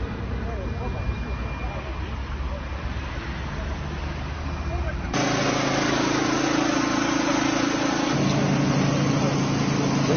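Outdoor street rumble with people talking; about five seconds in, a cut brings in a louder engine running at a steady hum, with voices over it, and its pitch shifts near the end.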